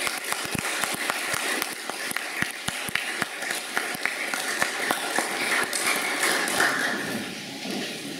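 Audience applauding with many irregular hand claps, thinning out in the last second or so.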